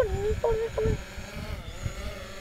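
A few short excited voice calls in the first second, then a lull with only an irregular low rumble of wind on the microphone.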